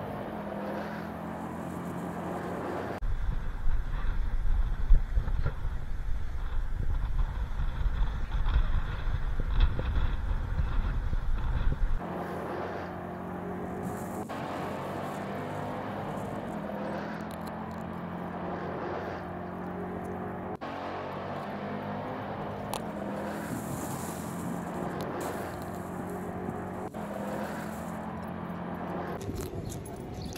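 A car driving: steady road and engine noise, with a stretch of loud, low wind rumble on the microphone in the first half.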